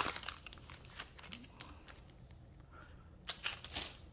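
Topps Chrome trading-card pack's foil wrapper crinkling in the hands as the cards are slid out, faint, with a flurry of small crackles in the first second and a few more a little after three seconds.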